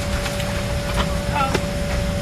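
Airliner cabin noise: a steady low rumble of engines and air, with a constant hum tone over it. A brief voice fragment about one and a half seconds in.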